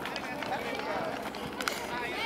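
High-pitched children's voices calling and cheering across an outdoor football pitch just after a goal, with a brief knock about three-quarters of the way through.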